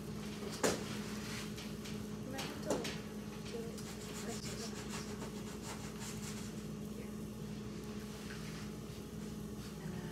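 A round cutter pressed through rolled-out dough on a steel worktable: soft rubbing and handling noise, with a sharp tap about half a second in, over a steady low hum.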